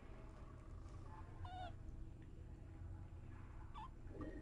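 Very young kitten mewing: a short wavering mew about one and a half seconds in and a briefer, higher mew near the end, over a low steady hum.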